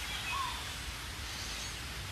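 A pause in speech filled with a steady low hum and hiss of background noise, with one faint short chirp about half a second in.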